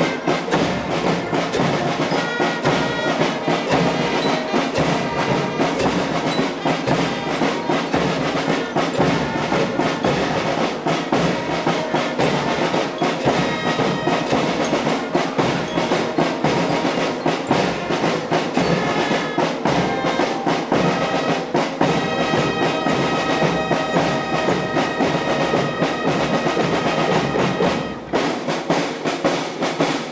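Navy marching band playing: trumpets and other brass carry the tune over rapid, steady drumming on snare and bass drums, with a short lull near the end.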